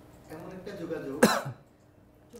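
A few faint murmured words, then a single sharp cough a little over a second in.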